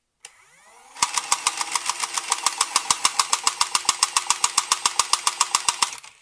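Nerf Stryfe flywheel motors spinning up with a rising whine. About a second in, the AutoStryfe's 130-motor gearbox pusher starts cycling with a rapid, even clacking about nine times a second over the motor hum, then stops near the end.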